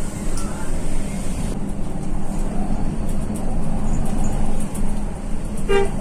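A truck's diesel engine running steadily under way, heard from inside the cab, with a short horn toot near the end.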